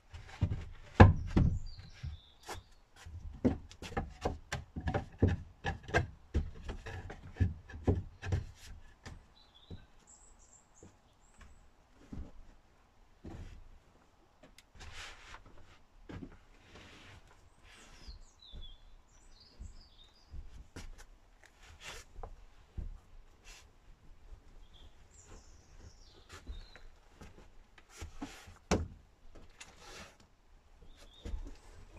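A camper van's wooden sofa base being pulled out and its foam cushions laid flat to make a bed: a quick run of wooden knocks and thumps in the first nine seconds or so, then occasional knocks and rubbing. A few short high squeaks come and go.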